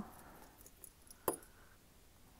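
Faint handling sounds of a small screwdriver and a tiny screw being worked out of the plastic front axle assembly of a 1:18 diecast model car, with one sharp click a little past the middle.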